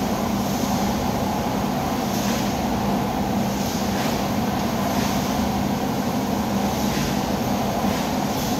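Steady mechanical hum and noise of a large service garage, with a few light clinks of hand tools being worked in an engine bay.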